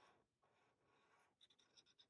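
Near silence, with a few faint ticks of a black felt-tip marker on paper in the second half.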